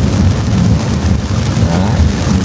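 Rain falling on a car's roof and windscreen, heard from inside the moving car's cabin over a steady low rumble of engine and tyres on the wet road.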